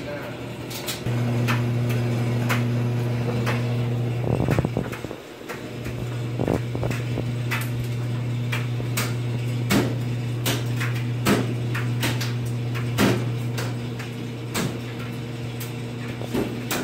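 Scattered knocks and clunks of washing machine and dryer lids and doors being handled, over a steady low hum that drops out briefly about five seconds in.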